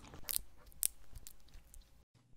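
Honeycomb being chewed close to an ASMR microphone: faint mouth sounds with a few sharp clicks in the first second.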